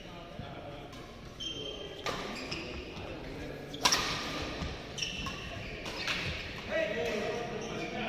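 Badminton rackets striking a shuttlecock during a doubles rally: several sharp hits a second or two apart, the loudest about four seconds in, echoing in a large hall.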